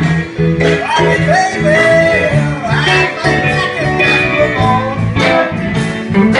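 Live blues band of electric guitars, bass guitar, drums and keyboard playing. A lead line of bending, sliding notes rises over the steady pulse of the bass in the first half.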